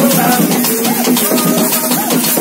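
A congregation sings a worship song while a metal shaker rattles steadily along with it.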